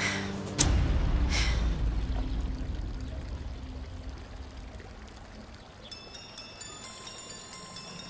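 A deep, low swell of dramatic background music comes in suddenly about half a second in and slowly fades, with a breathy sigh at the start and another about a second and a half in. Near the end, a faint pattern of high electronic tones joins it.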